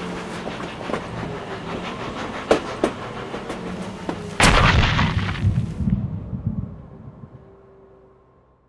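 Black granules flung into the air with bars and pattering down in scattered clicks and crackles, then a sudden loud rushing burst about four seconds in that dies away over the next three seconds and fades out.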